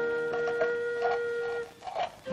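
Background film score: a flute holds one long, steady note that stops shortly before the end.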